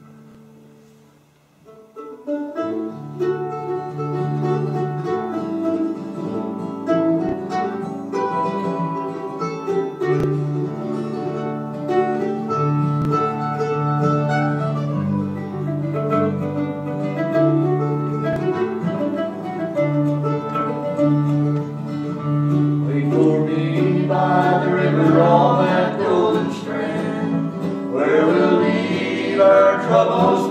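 Mandolin and acoustic guitar playing a plucked-string song introduction that starts about two seconds in, with steady bass notes under the melody.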